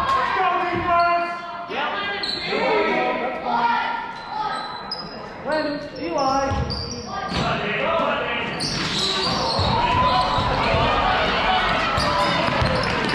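Voices calling and shouting in a large gymnasium, with a basketball bouncing on the hardwood floor at times, mostly in the second half.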